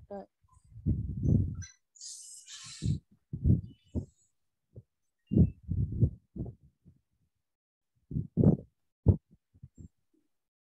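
Muffled, indistinct voice in short irregular bursts, with a brief hiss about two seconds in.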